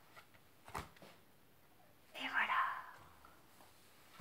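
A woman's single breathy, half-whispered word about two seconds in, with a faint click just before it; otherwise a quiet small room.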